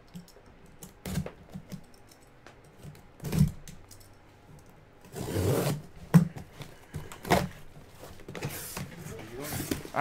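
Taped cardboard shipping case being opened by hand: scattered knocks on the box, a longer ripping of the tape seam about five seconds in, and more tearing and rustling of cardboard flaps near the end.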